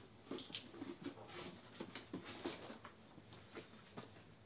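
A quiet, irregular run of small rustles and clicks from objects being handled at a desk.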